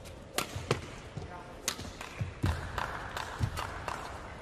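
Badminton rally: sharp cracks of rackets hitting the shuttlecock every second or so, with feet thudding and a shoe squeaking on the court.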